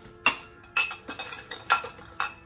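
Hard objects clinking and knocking together while a woven storage basket is handled at pantry shelves: three loud clinks, a quarter second in, just under a second in and near the end, with smaller knocks between.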